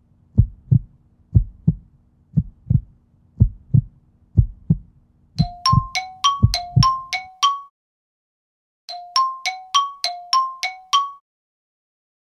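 Heartbeat sound effect: a low double thump, lub-dub, about once a second over a faint hum, which stops about seven seconds in. From about five seconds in, a short figure of quick bell-like chime notes plays twice with a pause between.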